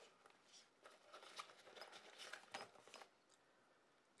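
Faint rustling and light clicks of a soft fabric pouch and its contents being handled, dying away about three seconds in.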